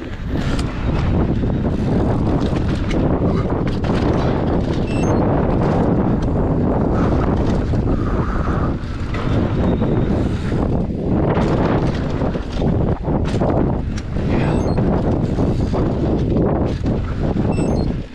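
Wind buffeting the microphone of a mountain bike rider descending a dirt trail at speed, over the rumble of knobby tyres on packed dirt and small knocks and rattles from the bike.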